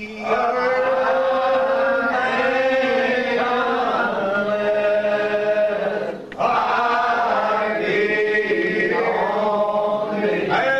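Unaccompanied men's voices singing a lined-out hymn in slow, drawn-out notes, the old Primitive Baptist way. The singing breaks off briefly about six seconds in and picks up again.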